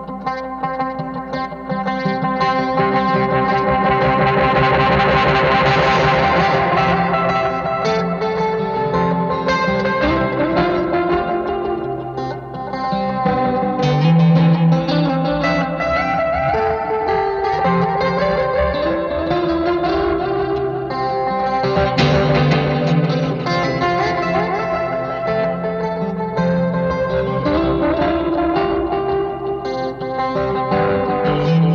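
Electric guitar playing a galloping riff in three through a Universal Audio Galaxy Tape Echo with two tape heads engaged, so the repeats answer back and forth like call and response, with chorus from a Walrus Audio Julianna. At one point the delay is switched into self-oscillation and the repeats swell into a wash of noise.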